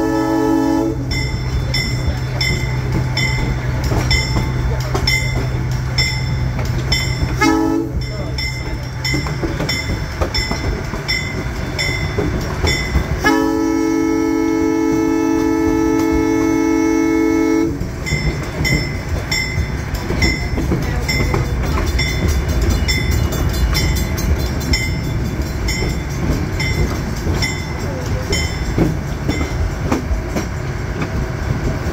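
Locomotive horn blowing a grade-crossing signal: a long blast ends just after the start, a short blast comes about eight seconds in, then a long blast of about four seconds. Under it a bell rings steadily, about once every two-thirds of a second, over the rumble of the moving train.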